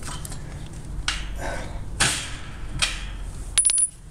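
Hitch-mounted steel mesh cargo tray being folded up by hand: a few short scraping and knocking noises, then sharp metallic clinks with a brief high ring about three and a half seconds in.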